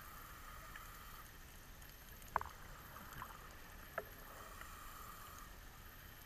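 Faint underwater ambience with a soft hiss that comes and goes, broken by two sharp clicks about a second and a half apart in the middle.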